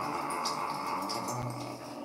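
Palms rubbing together to spread hair oil: a steady, soft rubbing hiss.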